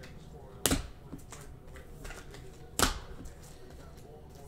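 Trading cards in clear plastic holders being handled and knocked down on a table: two sharp knocks about two seconds apart, with small clicks of plastic between.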